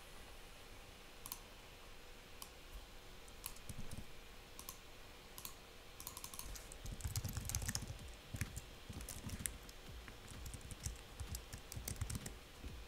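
Faint computer keyboard typing: scattered key clicks, with a quick run of keystrokes in the middle and another near the end.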